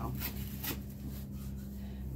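Light handling noise: a few faint rustles and small clicks over a steady low hum.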